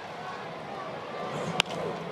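A single crack of a baseball bat striking the ball about one and a half seconds in: a soft contact that sends the ball up as a pop fly. It sits over steady ballpark crowd noise.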